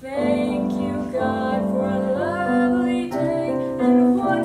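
A solo female voice singing with piano accompaniment. The voice comes in at the start after a short pause and holds long notes, with an upward slide about two seconds in.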